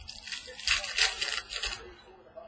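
Plastic trading-card pack wrapper crinkling and tearing in the hands: a run of scratchy rustles, loudest about a second in.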